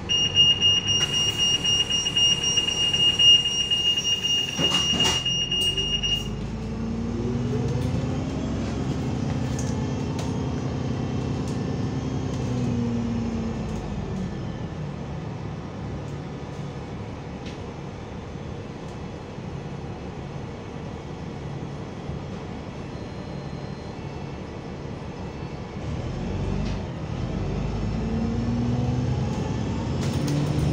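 Bus door-closing warning beeper sounding a high-pitched beep for about six seconds, with a knock about five seconds in as the door shuts. The bus engine then pulls away from the stop, its pitch rising and falling through the gear changes and rising again near the end.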